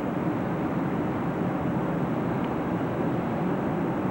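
Steady rushing cabin noise of a jet airliner in flight, heard from inside the passenger cabin.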